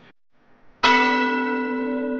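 A single bell-like chime struck suddenly about a second in, ringing on with a slow fade: the opening tone of a logo intro sting. Before it, near silence.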